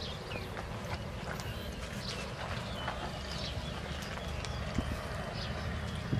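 Knife cutting chunks off a fresh cucumber into a steel bowl: a string of light, irregular clicks as the blade snaps through the flesh.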